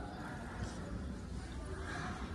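Crowd of spectators murmuring, with a held, shouted call trailing off right at the start.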